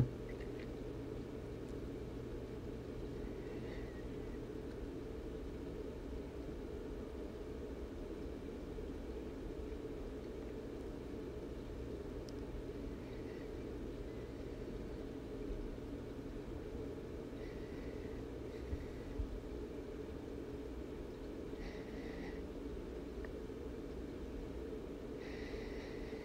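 Quiet, steady low hum of room tone, with a few faint, soft noises of about a second each, scattered through the middle and toward the end.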